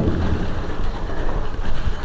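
Steady rustling noise from the handheld camera being moved and handled against its microphone.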